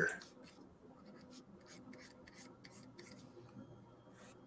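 Faint, irregular scratching and tapping of a pen stylus on a drawing tablet: a run of short, light strokes.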